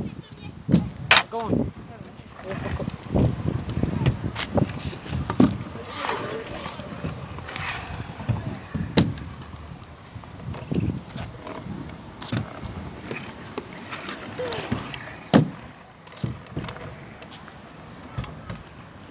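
Stunt scooter being ridden on skate-park ramps: irregular clacks and knocks of wheels and deck on the surface, with faint voices in the background.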